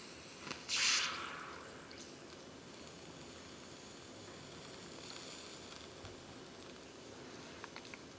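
A burning UCO stormproof match gives one short hiss about a second in, which fades within a second.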